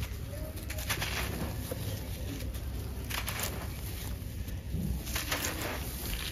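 A damp, gritty sand-cement lump crunching and crumbling as it is squeezed apart by hand, with grit showering down. It comes in grainy bursts about a second in, at about three seconds and near the end.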